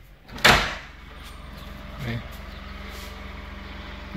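A front door pulled open against its roller catch, which lets go with one sharp clack about half a second in. A steady low hum follows.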